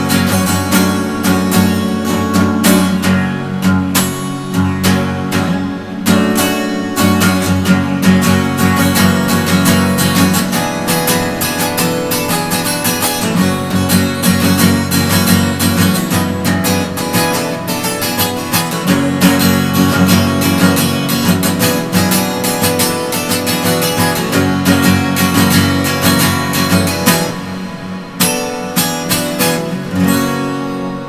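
Acoustic guitar strummed in a fast, steady rhythm.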